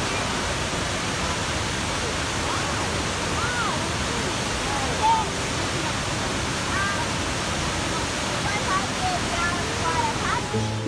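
Cumberland Falls pouring steadily into its plunge pool, a dense, even rush of falling water. Faint short higher sounds rise over it now and then, with one brief louder sound about halfway through.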